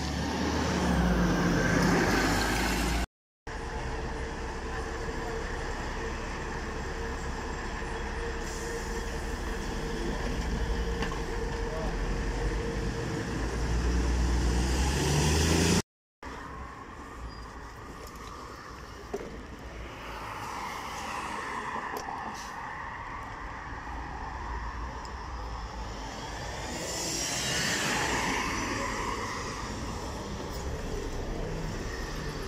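City buses and road traffic at a busy roadside bus stop: bus engines running close by, swelling louder as buses move off or pass, over a steady traffic noise. The sound drops out twice for a split second where the footage is cut.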